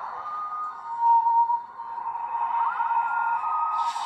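Electronic soundtrack tones from a TV drama, held steady and high with brief wavering pitch glides, loudest about a second in.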